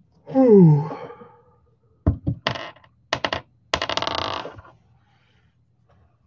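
A man's falling groan near the start, then a quick run of sharp clicks and a short clatter of things handled on a table.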